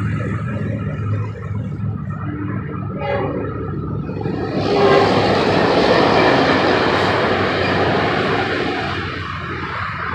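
Tri-Rail commuter train with bi-level coaches passing through a road crossing: a low rumble swells suddenly about four and a half seconds in into the loud rush of the train going by, then eases off toward the end.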